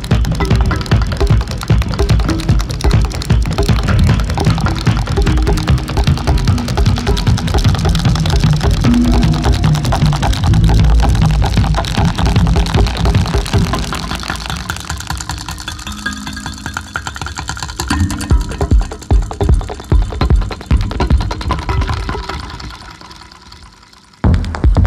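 Live homemade techno played on upcycled piezo-amplified instruments: metal tines and springs struck and plucked over a heavy low beat. The music thins out about two-thirds through, the beat comes back, and then everything fades down near the end.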